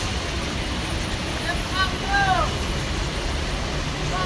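Steady rain noise with a low rumble from a heavy truck's engine, and a few short, rising-and-falling shouted calls about two seconds in.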